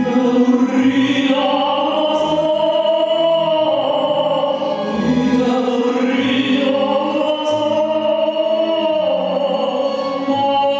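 A male singer performs a Neapolitan song live in long, held phrases with vibrato, swelling twice, over instrumental accompaniment that includes a double bass.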